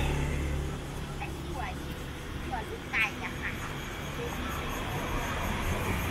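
Street ambience: a motor vehicle's engine running close by for the first second, then a steady traffic background with distant voices and a few short high chirps.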